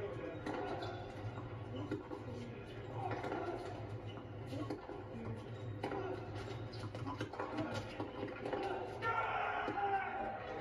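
Indistinct voices and crowd chatter from a televised college tennis match, heard through a TV speaker, with a steady low hum and a few short sharp clicks.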